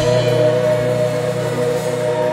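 Electronic keyboard holding a sustained chord, steady and unchanging, with no drums.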